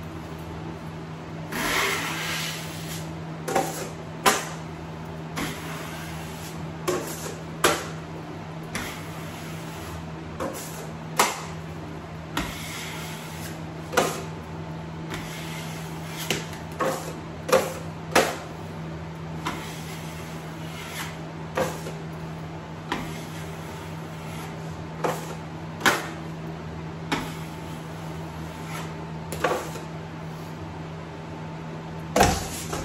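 Drywall knife and trowel working joint compound across a wall in a skim coat: sharp metal clicks and taps about every second or two as the knife meets the trowel, with a few longer scrapes of blade on wet mud. A steady low hum runs underneath.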